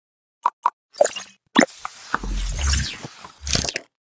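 Animated logo-intro sound effects: two quick pops, then more plops and blips, and a whooshing sweep over a deep bass boom, which cuts off just before the end.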